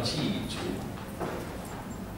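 A brief pause in a man's talk through a microphone, leaving low steady room noise with a few soft clicks.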